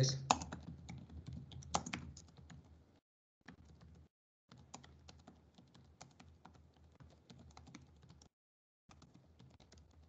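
Faint, irregular clicking of a computer keyboard as a sentence is typed, dropping out to dead silence briefly a few times.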